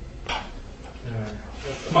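A person's voice: a short breathy burst, then brief low wordless vocal sounds, with speech starting near the end.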